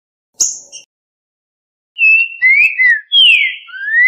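Recorded song of a green-winged saltator (trinca-ferro): a short, sharp high call note about half a second in, then from about two seconds in a loud whistled phrase of several gliding notes, the last rising. The phrase is the 'boca mole' song type that opens the edited track.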